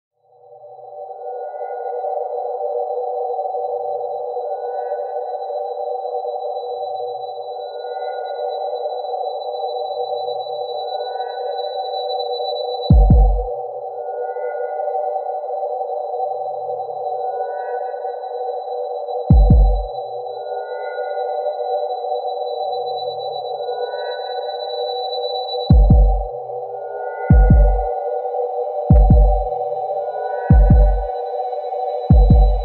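Intro of a speedcore electronic track: a dense, dark droning pad fades in over the first couple of seconds under a thin steady high tone, with faint short notes recurring about every three seconds. Heavy deep kick drums hit once at about 13 seconds and again at about 19 seconds. Near the end they come every second and a half.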